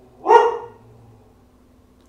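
A dog barks once, a single loud bark, an alert bark that its owner puts down to someone walking past the house.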